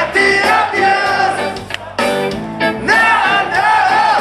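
A live rock band recorded from the audience: a man singing with electric guitar and bass, with a brief drop in the music about halfway through.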